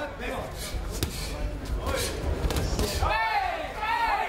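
Several sharp smacks of gloved punches and kicks landing in a kickboxing bout, followed near the end by a man shouting.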